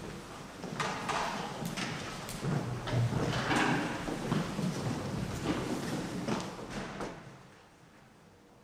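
Musicians shifting chairs and music stands and stepping about on a stage floor as they settle into their seats: irregular knocks, scrapes and shuffling that die down near the end.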